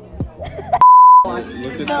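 A single loud, pure, steady electronic bleep of about half a second, a 1 kHz-style censor tone that blanks out all other sound while it plays.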